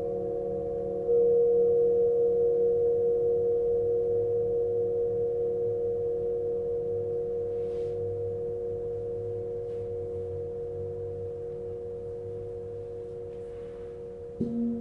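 Tibetan singing bowls ringing, several tones sounding together. A bowl is struck about a second in, and the combined ring then fades slowly with a regular wavering beat.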